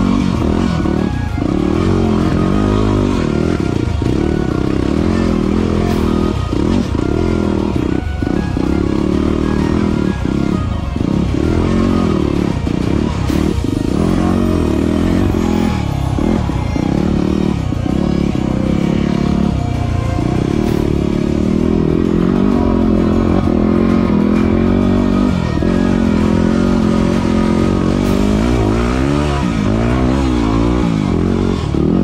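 Yamaha WR250R's single-cylinder four-stroke engine revving up and down continuously as the bike is ridden over a rocky dirt trail, with music laid over it.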